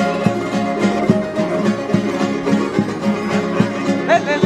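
Instrumental passage of a parranda (an Almerian seguidilla) with no singing. Several Spanish guitars are strummed in a quick, even triple-time rhythm of about four strokes a second, and a small plucked lute carries the melody over them.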